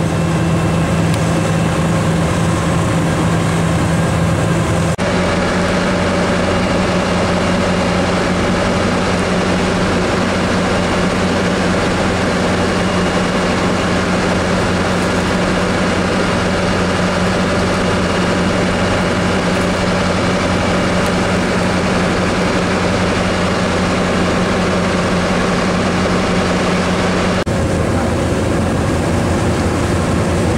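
A sportfishing boat's engine running steadily under way, a low drone with rushing wind and water noise over it. The engine note shifts slightly about five seconds in and again near the end.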